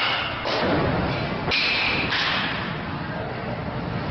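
Baseball bats hitting pitched balls in indoor batting cages: a few sharp hits about a second apart, each with a short echo in the hall, some from the neighbouring cage.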